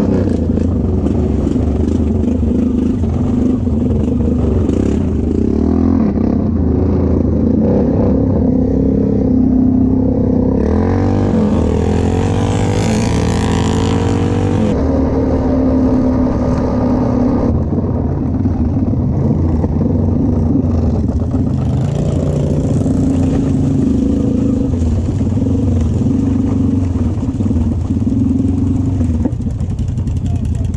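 ATV engine running under way, its pitch rising and falling with the throttle. For a few seconds near the middle a louder rush of noise with a sweeping whine rides over it.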